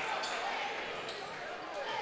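Faint ambience of a basketball game in a large gymnasium: a low, even crowd murmur, with a couple of faint knocks of the ball bouncing on the court.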